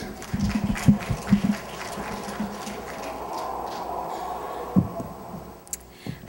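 Audience applause of scattered hand claps that thins out over the first few seconds, with a few low thumps near the start.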